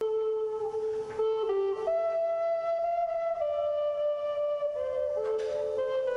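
Wooden end-blown flute playing a slow solo melody of long held notes that step up and then gradually back down, with a quick breath taken about a second in and again near the end.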